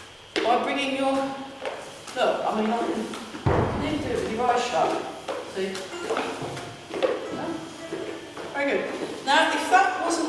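People talking, with one low thud about three and a half seconds in.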